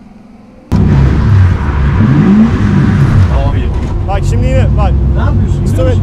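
Drift car's engine revving hard, heard from inside the roll-caged cabin: it comes in abruptly a little under a second in and stays loud, its pitch sweeping up and down as the throttle is worked. Voices talk over it from about halfway through.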